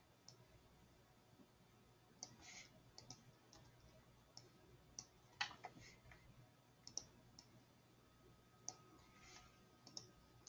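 Faint, scattered clicks of a computer mouse and keyboard, coming in small groups every second or two, over a faint steady low hum.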